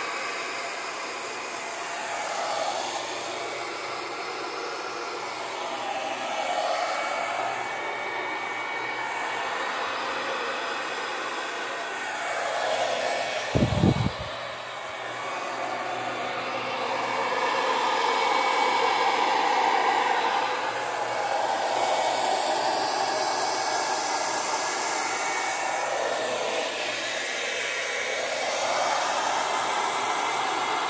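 Handheld hair dryer running steadily, blowing wet acrylic paint across a canvas; its whoosh swells and fades as it is moved around. A brief thump about halfway through is the loudest moment.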